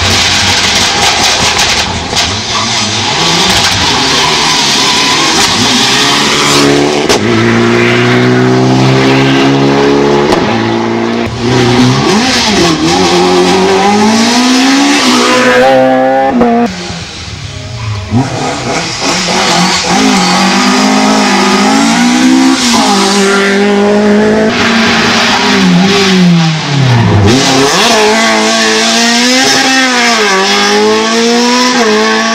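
Rally cars at full throttle on a stage, engines revving up and falling back through gear changes as they go by, with tyre and gravel noise. There is a brief lull about 17 s in, and near the end one car passes close, its note dropping steeply as it goes by.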